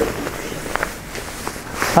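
Clothing rustling as a black knit beanie is caught and pulled on over the head, a steady scuffing rustle with a couple of light clicks about three-quarters of a second in.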